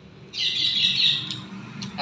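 Birds chirping, a dense twittering for about a second, followed by a couple of short clicks near the end.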